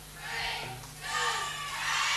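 Faint, indistinct voices over steady tape hiss and a low hum: the lead-in of a studio recording just before the count-in.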